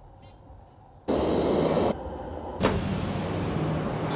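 Noise of a moving train in short edited clips: faint at first, then a loud, abruptly starting rumble and hiss about a second in, and from about two and a half seconds a steady rumble with a low hum.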